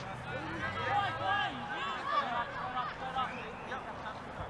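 Several voices shouting and calling over one another, no single voice clear, thinning out near the end.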